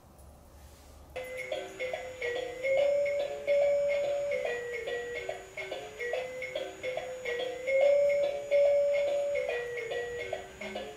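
Electronic learning-robot toy playing a simple beeping melody of short, evenly paced notes through its small speaker. The tune starts abruptly about a second in.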